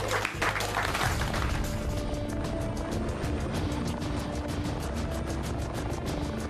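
Music with a helicopter's rotor beating rapidly and evenly, about ten beats a second, coming in about two seconds in.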